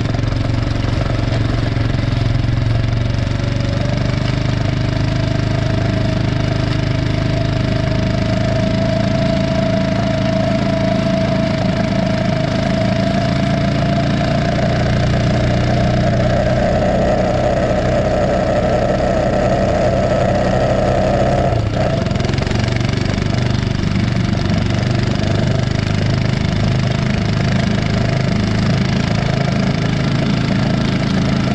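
Engine of a small towing vehicle running steadily at travelling speed while it pulls a chain-link fence drag, weighted with cinder blocks, over a dirt and gravel road. A steady higher tone in the mix drops out about two-thirds of the way through.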